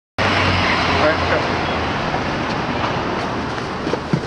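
Busy city street ambience cutting in abruptly just after the start: a steady traffic rumble with a babble of voices.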